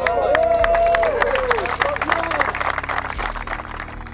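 A small group of people applauding, with many sharp individual hand claps and voices calling out over them. The clapping thins out toward the end.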